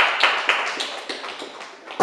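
Small audience clapping after a song, the claps thinning out and dying away toward the end.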